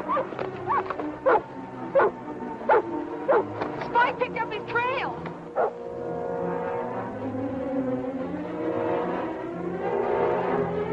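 A dog barking repeatedly, a sharp bark about every two-thirds of a second, quickening into yelps about four seconds in, over an orchestral film score. The barking stops at around five and a half seconds and the orchestra carries on alone.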